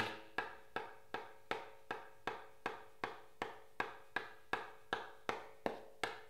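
A berimbau baqueta, a thin wooden stick held loosely like a drumstick, taps a small handheld block in a steady even beat, about three light taps a second.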